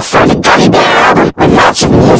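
Loud, heavily distorted and clipped audio from an effects edit, in about three harsh bursts cut apart by brief dropouts.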